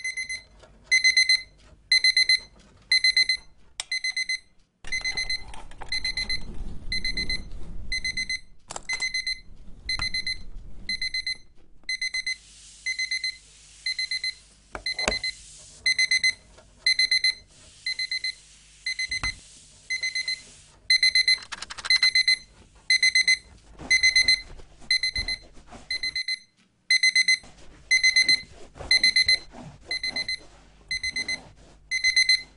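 Alarm clock beeping: a short high electronic beep repeating about twice a second without a break.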